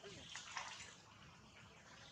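Light water splashing and sloshing as macaques move about in a pond, with a cluster of small splashes about half a second in.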